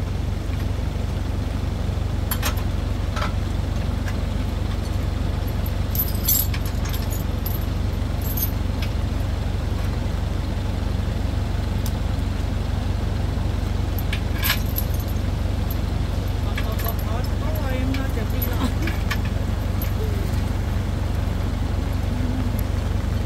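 A vehicle engine idling steadily, with a few sharp metallic clinks from a tow hitch and strap being handled, and faint voices.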